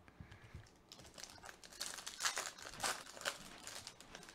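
Foil wrapper of a Topps Chrome baseball card pack crinkling in the hands as it is opened, in quick crackly bursts that start about a second in and are loudest past the middle.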